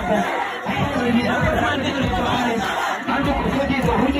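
A large crowd shouting and chattering over amplified music.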